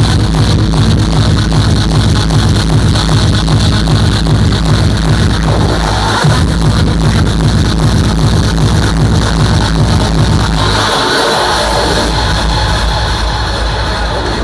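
Hardstyle dance music played loud over a hall sound system: a steady, heavy kick-drum beat kicks in at the start after a build-up, then the bass and kick drop away about eleven seconds in for a break.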